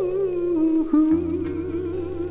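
Opening of a rockabilly 45 record: a long wordless vocal note held with vibrato, stepping down in pitch at the start, over backing with a low bass note entering about a second in.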